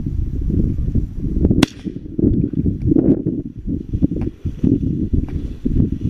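Footsteps pushing through leafy soybean plants, an uneven rustling and thudding that goes on throughout, with one sharp click about one and a half seconds in.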